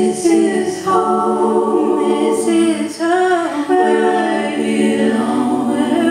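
A woman singing unaccompanied, with long held notes, a short breath break about three seconds in, and a wavering note just after it.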